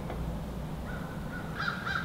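A bird calling faintly in the background, starting about halfway through and carrying on to the end.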